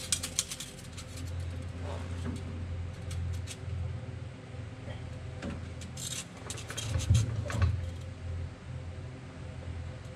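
Hands working at an engine's harmonic balancer fitting timing tape: rustling and light clicks in two spells, the loudest about seven seconds in, over a steady low hum.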